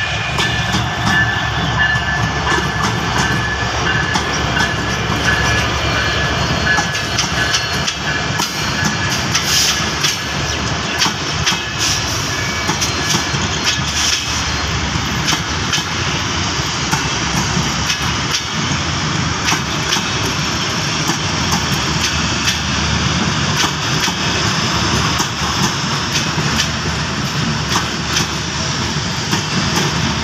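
Diesel locomotive of a passenger train passing close by, followed by a long rake of coaches rolling past with wheels clicking over the rail joints.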